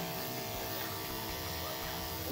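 Corded electric pet clipper buzzing steadily as it is run through a small dog's coat.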